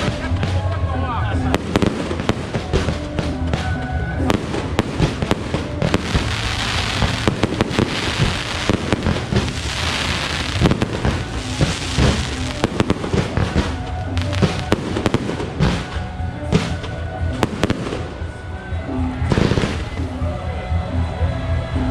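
A fireworks display: many shells launching and banging in quick succession, with a thick hiss of sparks from about six to twelve seconds in.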